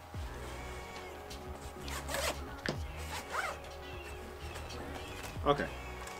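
Zipper on a Vertex Gamut backpack's back compartment being pulled open in a few short strokes.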